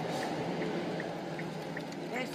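A faint, short high beep repeating evenly about two and a half times a second, like an electronic chime, over a muffled, indistinct low background murmur.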